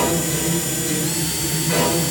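Cordless drill motor running steadily as its bit bores into a plastic doll's eye.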